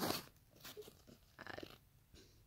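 Crinkling and rustling from a plastic-wrapped eraser pack being handled, in a few short bursts, the loudest at the start.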